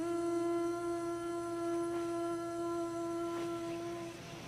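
Soundtrack music: a single long note hummed by a voice, held steady and ending near the end.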